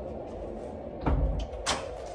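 A door being handled: a low thud about a second in, then a sharp click about half a second later.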